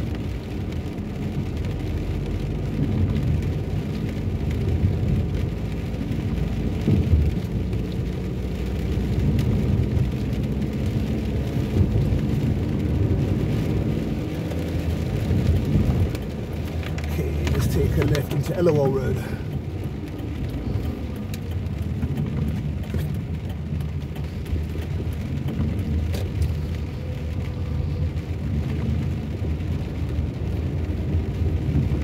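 A car driving on rain-wet roads, heard from inside the cabin: a steady low rumble of engine and road noise. About eighteen seconds in, a brief wavering pitched sound rises above it.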